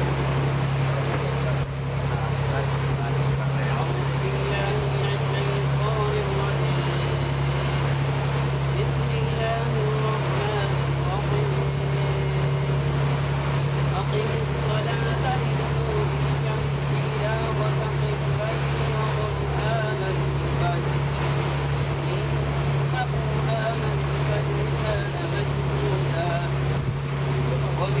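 A boat's engine running steadily, a continuous low drone that holds at an even level throughout.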